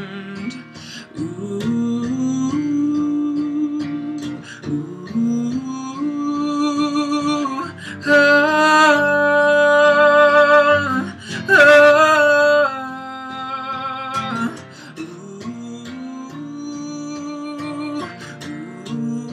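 Acoustic guitar strummed under a male voice singing long held notes, with no clear words. The loudest held notes come about eight and about eleven and a half seconds in.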